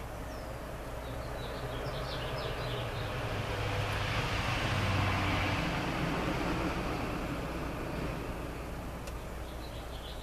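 A vehicle passing by: a broad rushing noise with a low rumble that builds gradually to a peak about halfway through and then fades away.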